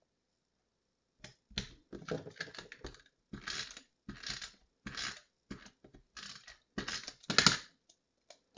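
Tape-runner adhesive dispenser drawn across small cardstock layers: a run of short, scratchy zips and clicks starting about a second in, along with paper handling, the loudest near the end.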